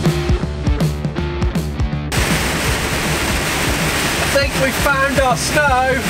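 Guitar background music for about two seconds, then a sudden cut to a loud, steady rushing of rain and tyre spray on a wet motorway, heard inside a lorry cab. A voice comes in near the end.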